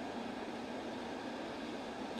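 Steady, faint background hiss of room noise, with nothing else happening.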